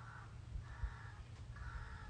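Crow cawing: three faint, harsh caws in a row, about two-thirds of a second apart.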